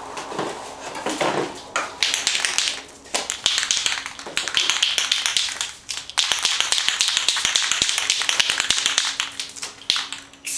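An aerosol spray paint can being shaken, its mixing ball rattling in fast runs of clicks with short pauses about 3 and 6 seconds in. A brief lower handling rustle comes at the start.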